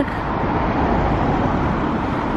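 Street traffic noise: a steady rush of passing cars.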